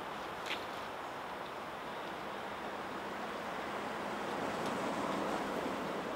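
A steady rushing noise, like wind or distant traffic, swelling slightly toward the end, with one faint click about half a second in.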